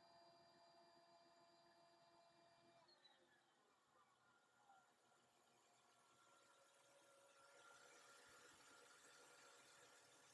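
Near silence: the Mercedes E320's engine idling very faintly, just started after its oil change. A few thin whining tones slide lower about three seconds in.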